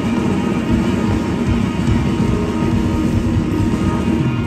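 Live band playing loudly, heard from the crowd: a dense, steady wall of bass and drums heavy in the low end.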